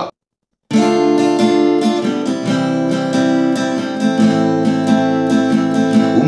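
Acoustic guitar strummed in an even rhythm through the song's chord progression of D minor, C and A minor. It starts abruptly after a short silence near the beginning.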